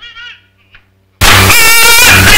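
A brief line of film dialogue, then about a second in a sudden, very loud, distorted blast with a harsh high-pitched tone, lasting just over a second and cutting off abruptly: an edited-in comedy sound effect, pushed to the point of clipping.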